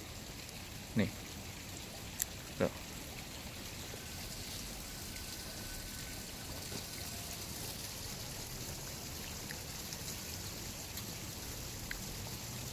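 Faint, steady outdoor background noise, an even hiss, with a single short spoken word about a second in and two brief clicks soon after.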